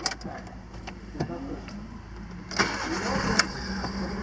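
Volkswagen Polo's 1.6 8-valve flex-fuel four-cylinder engine starting, heard from inside the cabin. It catches about two and a half seconds in and settles into a steady idle.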